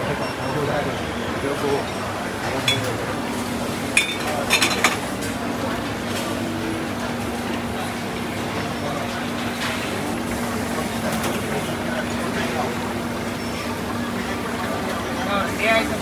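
Busy hawker-centre drink stall ambience: background voices and chatter, a steady machine hum, and a few sharp clinks of cups or utensils a few seconds in.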